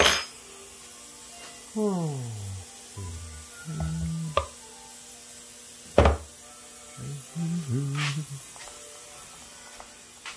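Metal hand tools clanking on a workbench: a sharp clank at the start and another about six seconds in. In between come wordless humming and muttering over a faint steady hum.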